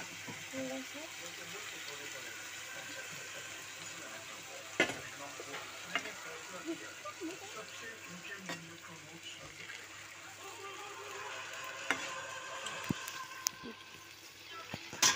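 Small fish and onions sizzling in hot oil in a kadhai, with a metal spatula stirring and clicking against the pan a few times.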